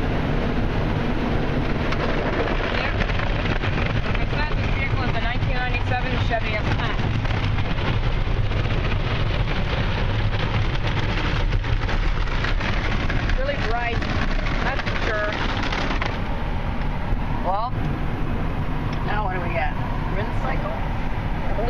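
Ryko Softgloss XS automatic car wash heard from inside a pickup cab: water spray and cloth brushes working over the truck in a steady rush of noise. The highest hiss drops away about sixteen seconds in.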